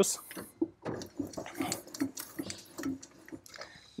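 Elevation handwheel and gearing of a 7.5cm le.IG 18 infantry gun being cranked by hand, giving an irregular run of small metallic clicks and ticks as the barrel rises.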